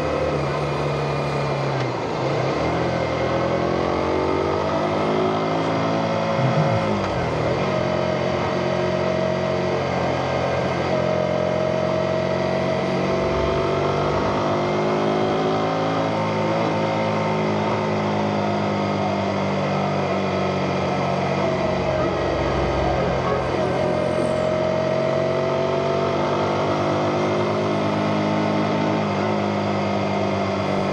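Motorcycle engine running under way, its note falling and then climbing again about two seconds in and once more near eight seconds, then holding a fairly steady pitch with small rises and falls.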